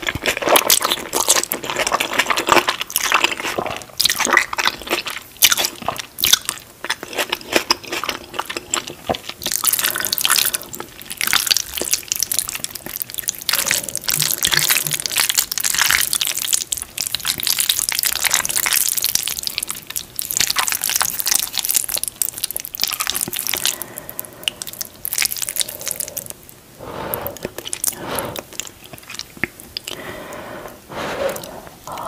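Close-miked chewing of a mouthful of thick, dry-sauced instant noodles: a dense, continuous run of small mouth clicks and smacks.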